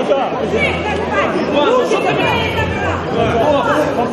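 A crowd of men's voices talking loudly over one another, many at once, during a pushing scuffle at a doorway.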